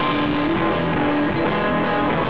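A rock band playing live and loud, with electric guitars to the fore over a full band sound.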